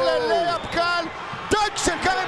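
A basketball dunk, heard as two sharp knocks near the end as the ball is slammed through and the player hangs on the rim.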